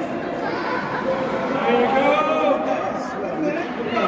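Indistinct chatter of several people talking at once, echoing in a large indoor ice rink.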